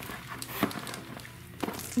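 Faint background music over slime being mixed by hand. There are two short sticky squelches, about a second apart, the second near the end.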